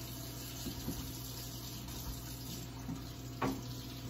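Kitchen sink faucet running, a steady flow of water as baby bottles are rinsed under it.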